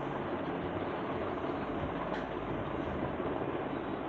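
Steady rushing background noise with no speech in it, and a faint click about two seconds in.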